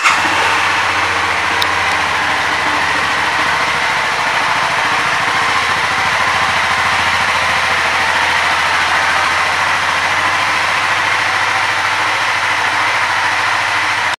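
Honda CBR300R's single-cylinder engine idling steadily, its level and pitch even throughout.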